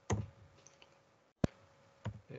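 Computer keyboard keystroke: one sharp click about a second and a half in, with a softer, shorter knock just after the start.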